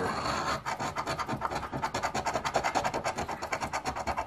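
A coin scraping the silver coating off a scratch-off lottery ticket in quick, even back-and-forth strokes.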